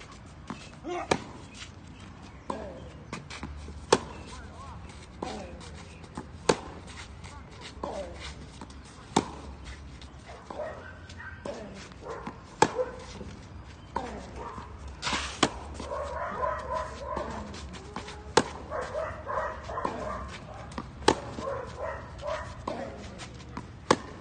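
Tennis rally: sharp pops of the racket striking the ball, with ball bounces in between, coming every second or so. Background voices join in the second half.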